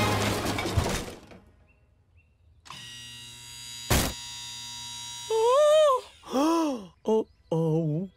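Cartoon soundtrack of a dump truck crashing: a rushing noise dies away in the first second, then after a short hush a held musical chord, a single thunk about four seconds in as the truck hits the wooden flower beds and sprays its load, and then a run of short pitched sounds that rise and fall.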